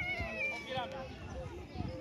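Young footballers' high-pitched shouts and calls, one thin cry in the first half second, over other voices on the pitch.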